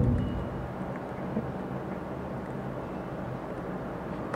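Steady room noise with a low hum and no speech, and a single faint click about a second and a half in.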